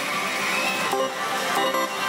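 Pachislot hall din of music and electronic machine jingles, with two short clicks about a second and a second and a half in, as reel-stop buttons on a Happy Jugglar VII slot machine are pressed.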